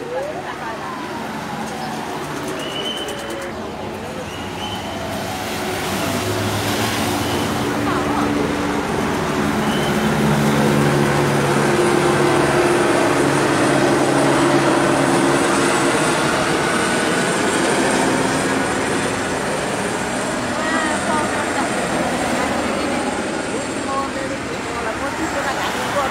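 Street traffic: cars and light vehicles driving past on a city road, building to its loudest about ten to sixteen seconds in as a vehicle passes close, with onlookers' voices underneath.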